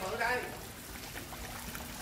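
A man's voice is heard briefly at the start, followed by a faint, steady trickle of running water.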